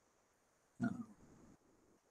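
Near silence broken once, about a second in, by a man's short hesitation sound, "uh".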